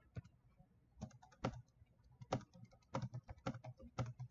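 Typing on a computer keyboard: faint, irregular key clicks that begin about a second in and come several times a second.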